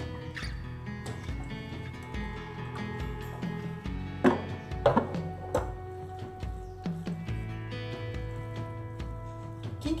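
Background music with steady held notes. About four to six seconds in come three short, louder knocks or scrapes, fitting serving utensils against a stainless steel bowl as a pasta salad is tossed.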